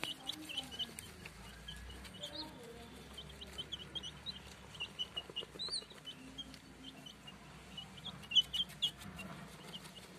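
Young chicks cheeping: many short, high peeps in quick succession, a little louder for a moment near the end.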